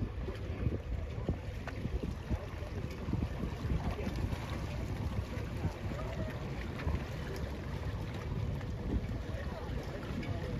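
Gusty wind buffeting the microphone: an uneven rumble that rises and falls throughout. Faint, distant voices come through about halfway in.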